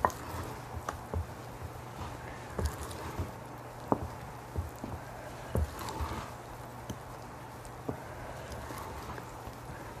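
Batter being folded by hand with a wooden-handled spoon in a glass mixing bowl: irregular soft knocks and taps of the spoon against the glass, about one a second, amid quiet stirring of the thick dough.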